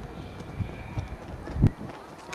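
A few dull low thuds and rumbles, the loudest about a second and a half in.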